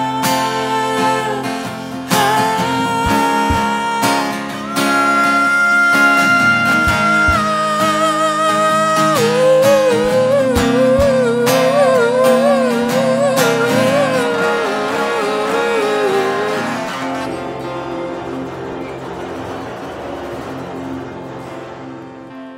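Live solo acoustic guitar music: chords under a melodic line of held, wavering notes, dying away over the last several seconds as the song ends.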